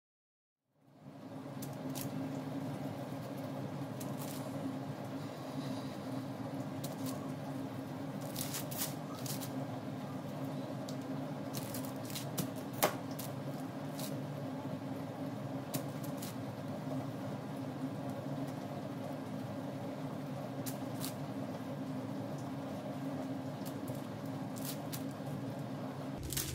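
A steady low hum with a few held low pitches, under scattered faint clicks and rustles as hands roll pieces of dough into balls on baking paper.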